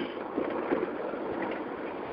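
Steady road and wind noise from a moving vehicle, heard over a cell phone line and cut off in the highs by the phone connection.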